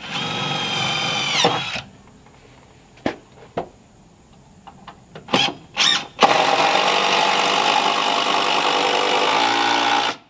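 Cordless drill driving screws into the stair stringer. A long run at the start ends with the motor pitch sagging. A few short trigger blips follow, then a second long steady run to the end.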